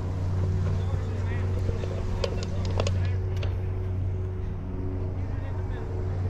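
A steady low engine hum, with a few light clicks a little over two seconds in.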